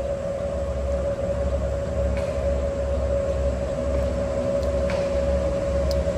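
A steady humming tone over a low, uneven rumble.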